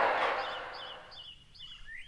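A small bird chirping: a string of short, high chirps repeating about two or three times a second, while the tail end of a voice fades out in the first second.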